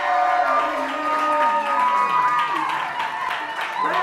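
Walk-on music with long held notes and slow pitch glides, over an audience applauding and cheering as a guest is welcomed on stage.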